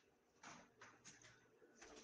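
Near silence in a pause between a man's words, with a few faint short clicks.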